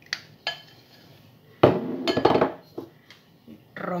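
Spatula scraping and knocking against a glass bowl to clear out the last of the melted chocolate. Two short clicks come within the first half-second, and a louder clattering, scraping stretch about halfway through.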